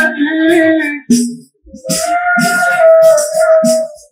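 Live song with a boy singing into a microphone, accompanied by an end-blown pipe flute and a hand drum. The music breaks off briefly about a second in, then comes back with a long held note.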